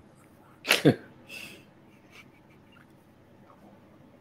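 A person sneezing once, about three-quarters of a second in, followed by a short breathy hiss.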